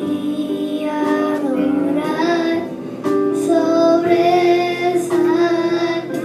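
A young girl singing a worship song into a microphone, amplified over sustained instrumental accompaniment.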